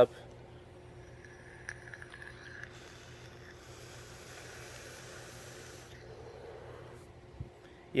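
A faint hiss of air drawn through a rebuildable vape atomizer on a mechanical mod, lasting about three seconds. The hit is weak: the coil needs rebuilding.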